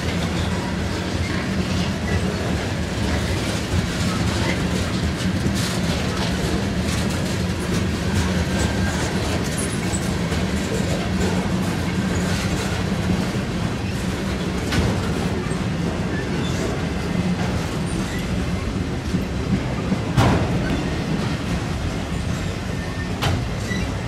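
Freight train cars rolling past at steady speed, tank cars then autorack cars: a continuous rumble of steel wheels on rail with scattered clicks, and a sharper knock about 20 seconds in.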